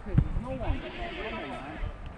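Footballers shouting calls to each other across an outdoor pitch, several voices overlapping with long rising-and-falling shouts. A single loud thump sounds just after the start.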